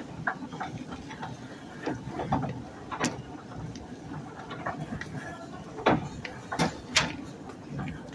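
A few sharp clicks and knocks over faint steady background noise, the loudest about three, six and seven seconds in.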